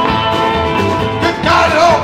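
A live band playing an up-tempo country-tinged rock song between vocal lines, on drums, double bass, guitars, banjo and violin, with a regular low beat under sustained string notes. A wavering, bending high note comes in during the last half second.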